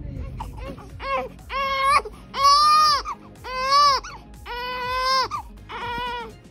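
Newborn baby crying: six short wails in a row, starting about a second in, each under a second long.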